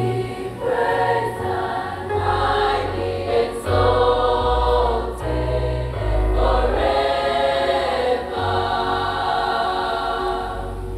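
Choir singing the responsorial psalm of the Mass, over a low instrumental bass line that moves from note to note.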